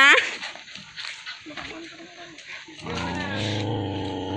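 A dog growling, a low steady growl that starts about three seconds in and holds.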